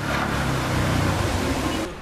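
Outdoor street sound from flood footage: a steady rushing noise with a low rumble underneath, which fades out just before the end.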